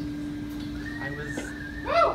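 The last electric guitar note of a song ringing out and slowly fading away. About a second in, audience members start whooping with high, rising and falling calls.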